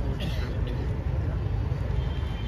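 Indistinct audience voices over a steady low rumble.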